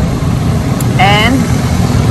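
Steady low rumble of motor traffic on the street, with an engine idling close by.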